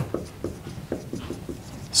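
Dry-erase marker writing capital letters on a whiteboard: a quick run of short squeaking strokes, one per pen stroke.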